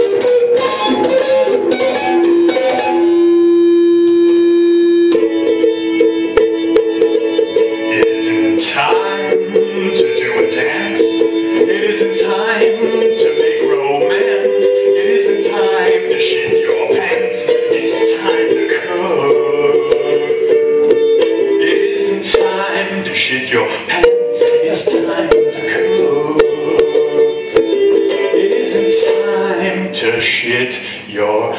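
A ukulele being strummed, with a man's voice singing a melody of long held notes over it.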